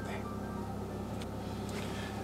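A steady low hum of a car cabin with faint background music of held notes, and a small click about a second in.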